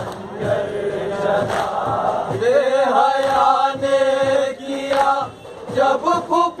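Group of men chanting a noha, a Shia mourning lament, with long held notes from about two seconds in, over a steady beat of hands striking chests (matam).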